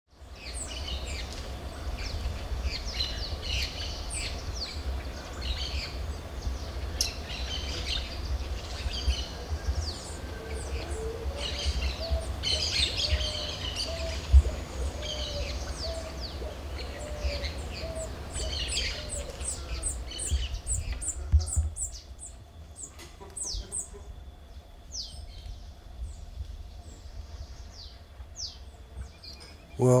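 Several birds chirping and calling in a busy chorus of short, high notes, with a lower call repeated about once a second in the middle. A low rumble sits underneath for the first two-thirds and then drops away, leaving quicker, fainter high ticks and chirps.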